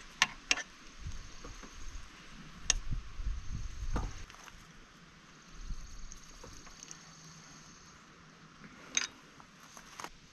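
A bicycle pedal being fitted to a crank arm by hand and with a wrench: a few sharp metal clicks and taps, with low rumbling handling noise between them.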